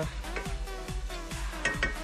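Background electronic music with a steady bass beat, over a wooden spatula stirring meat in a frying pan, with a few short clicks near the end.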